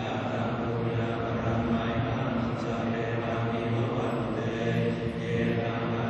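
Buddhist monks chanting in Pali, a low, steady monotone with held notes and short breaks for breath.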